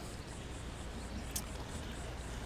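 Faint, steady outdoor background noise: a low rumble under a soft hiss, with one brief faint tick about one and a half seconds in.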